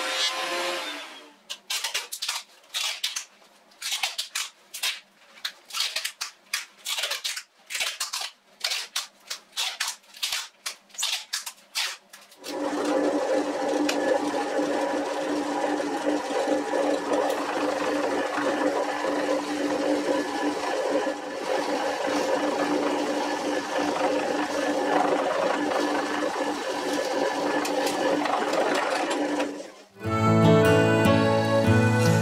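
A benchtop thickness planer runs for about a second, followed by a string of short, irregular bursts of workshop machine noise with gaps between them. From about twelve seconds in, a drill press motor runs with a steady hum while it drills into a wooden board, and it cuts off just before the end.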